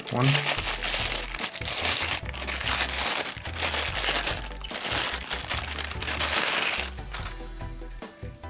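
Thin clear plastic bag crinkling in repeated bursts as it is pulled open and worked off a pair of sunglasses, stopping about seven seconds in.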